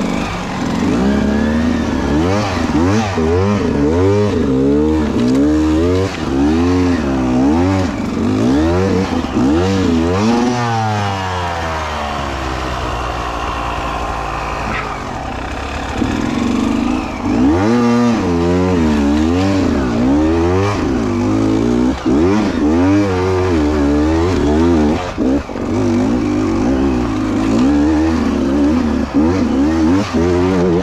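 Beta 200RR two-stroke enduro motorcycle engine revving up and down in quick, repeated throttle bursts while crawling through a tight, rutted trail. About halfway through it holds a lower, steadier note for a few seconds before the bursts resume.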